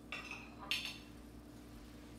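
A metal fork clinking against a ceramic plate: two short clinks, the second louder, under a faint steady hum.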